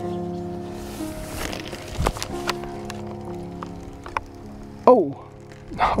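Solo piano music with slow, sustained notes. A couple of sharp clicks about two seconds in, and near the end a short falling vocal sound followed by a laugh.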